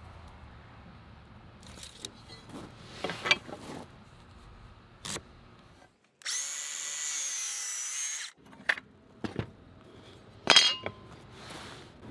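Cordless brushless circular saw (Milwaukee M18 Fuel) cutting through a softwood board: about two seconds of steady high-pitched saw noise with a slightly wavering whine, then it stops. A few short knocks come before and after it.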